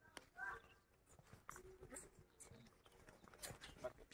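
Near silence, with faint hoof steps and scuffs of a water buffalo heifer walking on a lead over sandy dirt.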